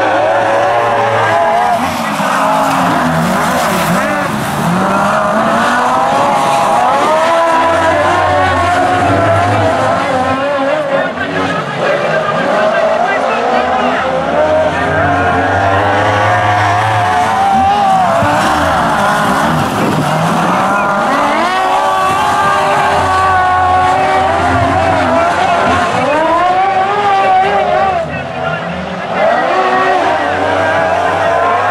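Several speedway sidecar outfits racing, their engines revving up and down in pitch through the turns. The sound dips briefly near the end.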